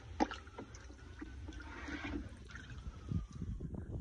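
Faint trickling and sloshing water from the tub where earth bricks are soaking, with a few small clicks, the clearest about a quarter second in.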